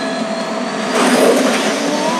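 Steady jet-like rushing of the Iron Man suit's thrusters, a film sound effect, with a faint whine running through it and a slight swell about a second in.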